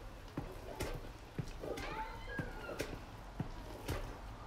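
A wooden spatula stirring thick, soft-cooked rice in a large aluminium pot, with soft knocks and squelches about twice a second. Around the middle comes a short, wavering high-pitched cry.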